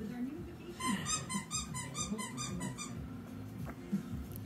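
A quick run of about ten high, evenly spaced squeaks, about five a second, over a low voice.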